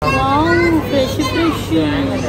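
A high-pitched voice talking, over a steady low background hum.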